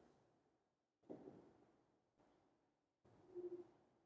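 Near silence: faint room tone with two brief soft noises, one about a second in and one near the end.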